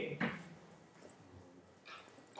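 The end of a man's drawn-out hesitation vowel and a short voiced sound just after it, then faint room tone.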